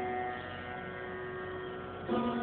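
Sarod strings ringing on after a stroke: a steady cluster of held tones that fades slightly, with no new plucks and no tabla strokes.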